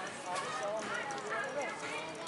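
Overlapping chatter of several passersby talking at once, with footsteps on pavement close by.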